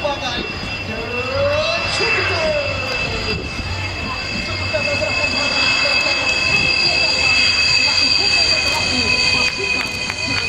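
Sukhoi Su-30MKM's twin AL-31FP turbofans running at low power as the jet rolls along the runway, a steady high turbine whine over a low rumble, falling slightly in pitch.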